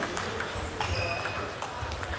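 Table tennis rally: the celluloid-type plastic ball clicking sharply off the rubber bats and the table several times, quickly one after another.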